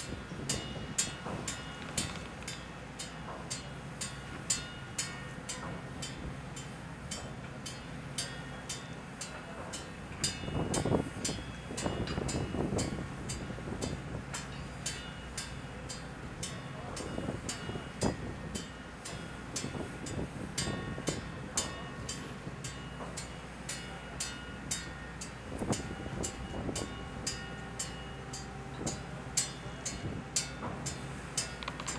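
Steady low hum of a ship's machinery with wind across the deck. A regular ticking runs about twice a second throughout, and there are brief voices a little before the middle.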